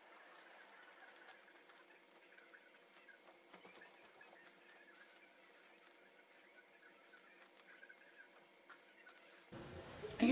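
Near silence: faint room tone with scattered faint ticks.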